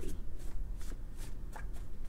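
Tarot cards being handled and shuffled by hand: a quick, uneven series of soft card flicks and rustles.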